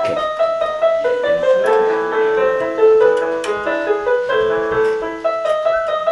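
Portable electronic keyboard with a piano voice, played with both hands: a melody of held notes over a lower line, moving at an even pace.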